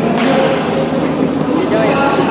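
Voices calling across a badminton hall over a steady hum, with one sharp smack just after the start, like a racket striking a shuttlecock.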